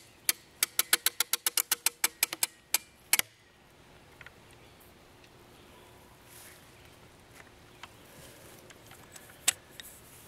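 A rapid, even run of sharp mechanical clicks, about six a second, ending about three seconds in; after that only faint background with an occasional small tick.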